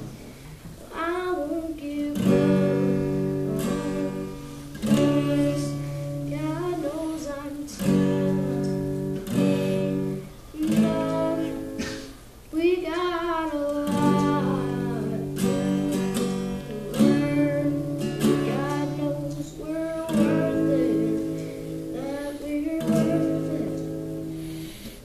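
A boy singing to his own acoustic guitar, strumming chords steadily under the sung phrases. There is a brief lull about twelve seconds in.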